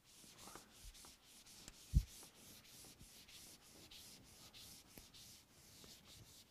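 Whiteboard eraser rubbing across a whiteboard in quick repeated back-and-forth strokes, a soft swishing hiss. A single dull thump about two seconds in is the loudest sound.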